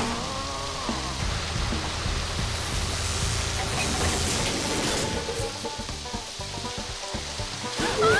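Water spraying in a strong jet from an irrigation pipe, a steady hiss, over background music.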